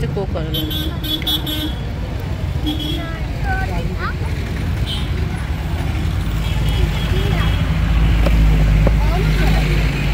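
Street traffic: motor vehicle engines running close by, with a horn sounding briefly about a second in. A heavier engine rumble builds through the second half and is loudest near the end.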